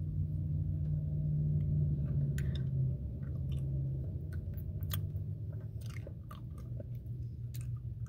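Steady low drone of a moving car heard from inside the cabin, a little louder in the first half, with scattered small clicking mouth sounds close to the microphone.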